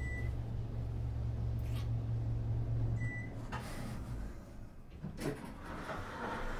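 Two people kissing: a few soft lip smacks and breaths over a low steady rumble that fades out about four seconds in.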